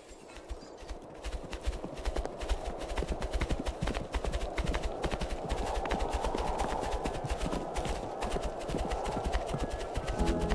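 Hoofbeats of a herd of horses galloping on ground: a dense, unbroken stream of thuds that fades in over the first two seconds.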